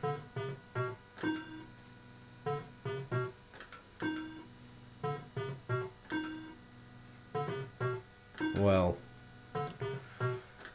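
Electrocoin Red Bar fruit machine playing its electronic sound effects: a run of short pitched beeps and little tune phrases as the reels spin and stop, game after game.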